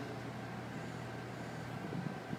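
Steady low hum of background noise with no speech.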